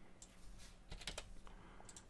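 Faint computer keyboard typing: a few scattered keystrokes, with a quick run of them about a second in.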